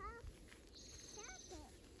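Faint short vocal sounds from a small child, two brief gliding squeaks, one at the start and one a little past the middle, with a short high buzzy trill between them.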